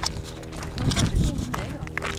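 Footsteps on a stony dirt trail, with irregular sharp clicks and knocks from the steps and the handheld camera.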